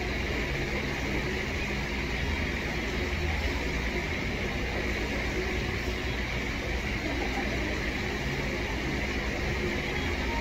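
Steady background noise, a low rumble with a hiss on top, unbroken and at an even level.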